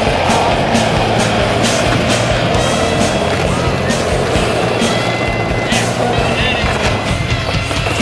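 Skateboard wheels rolling on concrete, with music playing over it.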